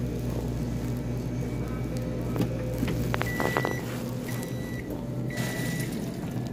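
Microwave oven running with a low hum that stops about halfway through, followed by three beeps about a second apart, the signal that its heating cycle has finished. A few clicks come as the hum stops.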